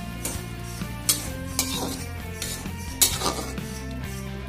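A spatula stirring greens and fish in oil in an aluminium pot, scraping and knocking against the pot, with sharp clinks about a second in and again near three seconds. Background music plays underneath.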